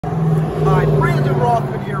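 A man talking over a steady low hum from the idling 3.6-litre V6 of a 2012 Buick Enclave.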